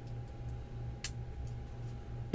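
A few faint, sharp clicks, the clearest about halfway through, over a steady low hum and a thin steady tone.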